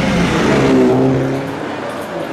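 A car engine running under acceleration as the car drives past, its sound dropping away about a second and a half in.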